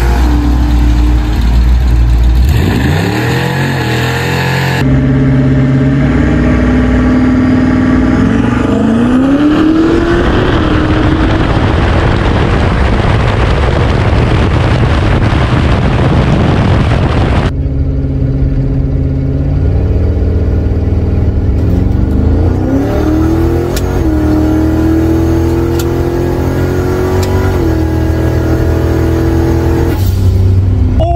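Lincoln Town Car drag car's engine at full throttle on a drag-strip pass, its pitch climbing and holding through the gears, heard again from several angles. From about ten seconds in, a loud rushing wind noise from the car-mounted microphone at speed covers it, until the sound changes abruptly about seventeen seconds in and the engine is heard again, revs rising and stepping.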